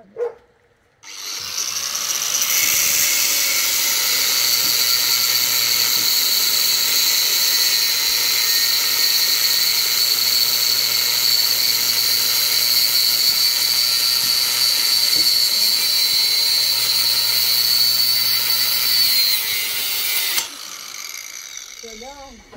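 Handheld angle grinder cutting a metal bar: a loud, steady high-pitched whine over grinding noise that starts about a second in and cuts off suddenly near the end.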